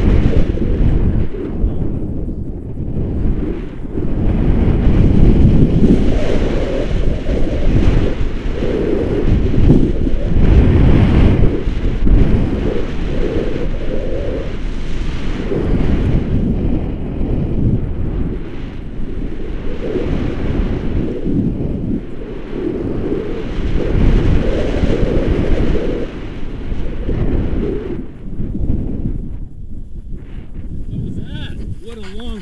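Loud, low rumbling wind noise from the airflow of a tandem paraglider flight buffeting the camera's microphone. It swells and eases every few seconds.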